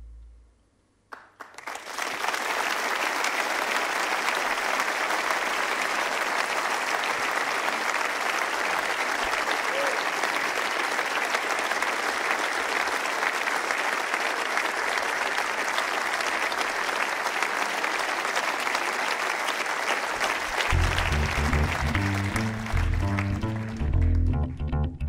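Audience applauding steadily. About twenty seconds in, a double bass starts plucking a line under the applause.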